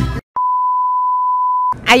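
A single steady electronic beep held at one pitch for about a second and a half, stopping abruptly. Background music cuts off just before it, and a woman's voice starts right after it.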